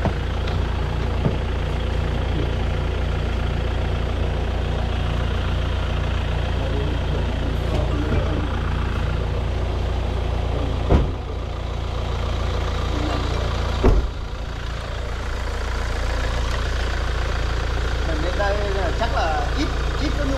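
Hyundai Tucson diesel engine idling steadily, with two sharp thumps about eleven and fourteen seconds in.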